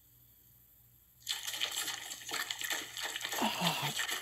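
Near silence, then about a second in, sudden wet squelching and splattering as a gloved hand crams soft stuffing into a raw turkey, in short irregular squishes.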